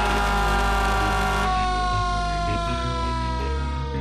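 Fire engine siren sounding one long tone that sinks slowly and steadily in pitch, over steady background music.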